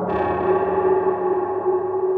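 Dark ambient drone music: layered sustained tones, with a new chord entering at the start that rings on and slowly fades.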